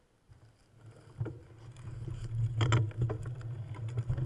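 A vehicle pulling away from a stop: after a near-silent start, a low rumble with scattered rattles and knocks grows louder from about a second in.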